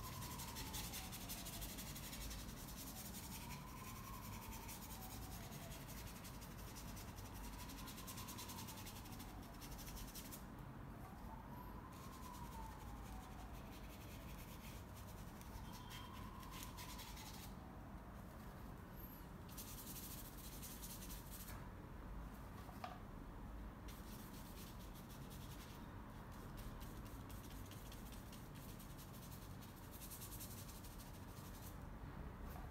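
A bristle paintbrush rubbing black acrylic paint onto canvas in stretches of strokes with short pauses, faint. Behind it, during the first half, a faint high tone rises and falls about every four seconds.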